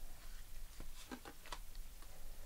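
Faint clicks and light rustle of a deck of tarot cards being handled as a card is slid off the deck, a handful of soft ticks around the middle.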